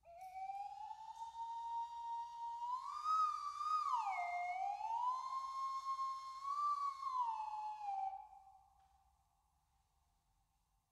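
A slide whistle plays one long, sliding note: it rises slowly, swoops up, drops and rises again, then sinks and fades out about eight seconds in.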